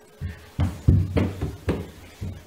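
A small child's quick footsteps thudding on the floor, about five steps at uneven spacing.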